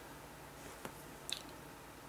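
Quiet room tone in a pause between sentences, with a faint click a little under a second in and a few more faint clicks shortly after.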